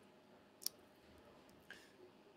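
Near silence with room tone, broken by one short sharp click about two-thirds of a second in and a fainter click near the end.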